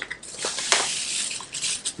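Crinkling rustle of a resealable kraft-paper pouch being handled and pulled open, with a sharp click partway through.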